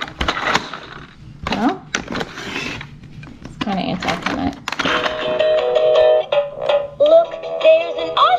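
Fisher-Price Little People See 'n Say toy: plastic clicking and rattling as its lever is worked, then from about five seconds in the toy plays a short electronic tune.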